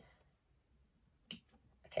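A single sharp snip of small scissors cutting into cotton fabric about a second in, followed by a couple of fainter clicks of the blades.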